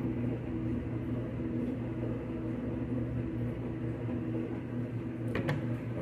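Steady low machine hum filling a small room, with a couple of light clicks near the end as tarot cards are handled.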